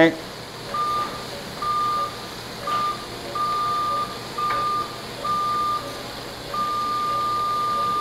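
A surgical device's steady high-pitched activation tone, switching on and off in irregular stretches from a fraction of a second to nearly two seconds, the longest near the end. This is the beep an operating-room energy device gives while it is being fired.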